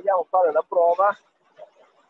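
A person's voice speaking for about the first second, then near quiet; no machine sound stands out.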